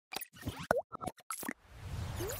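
Cartoon-style sound effects for an animated logo: a quick run of about six short pops, one with a pitch that dips and rises, then a low whoosh swelling in near the end.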